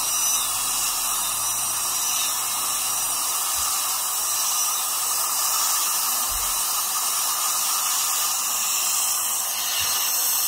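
High-speed dental drill running steadily on a tooth: a continuous high hiss.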